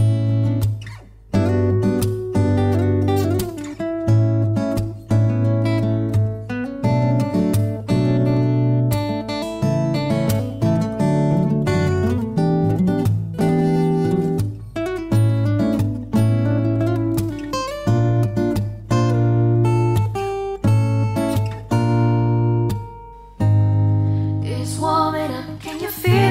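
Instrumental break of a slow pop ballad played on guitar, with chords over a deep bass line. A woman's singing comes back in near the end.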